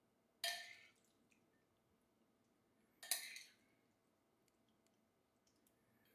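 Two short scrapes of a metal spoon scooping wet tuna salad from a bowl, about two and a half seconds apart, with near silence between them.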